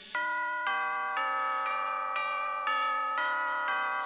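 Bell chimes in a church-bell pattern on a children's music recording: about eight strikes, roughly half a second apart, each ringing on under the next.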